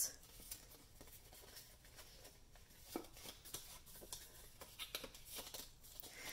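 Faint rustling of cardstock being folded by hand along its score lines, with a few soft clicks.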